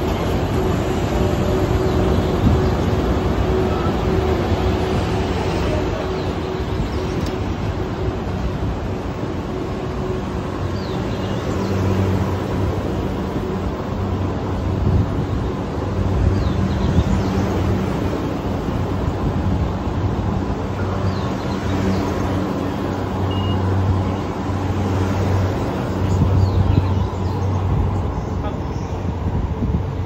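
EF81 electric locomotive hauling a rake of unpowered E235-series cars slowly past at departure. A steady hum comes from the locomotive for roughly the first ten seconds. After that, a low rumble of the towed cars' wheels on the rails swells and fades as they roll by.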